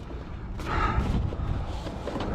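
Gloved hands rummaging among tools and plastic jugs in a truck's side storage compartment: rustling and faint knocks of items being shifted while searching for a hammer.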